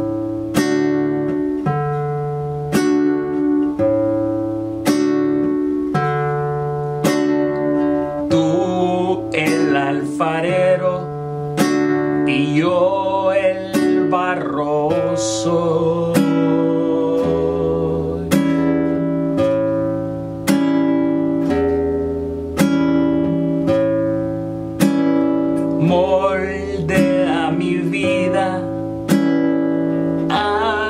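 Nylon-string classical guitar fingerpicked slowly in arpeggiated chords, a note about every second, with a man's voice singing the melody over it in places, mostly in the middle and near the end.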